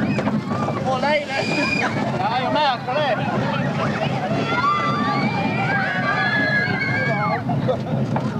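High-pitched voices calling out and shrieking, some held and wavering, over a steady low rumble of a moving amusement-park ride car.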